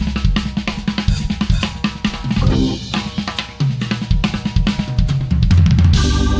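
Band music with a drum kit playing a steady driving beat of kick, snare and cymbals over a heavy bass line.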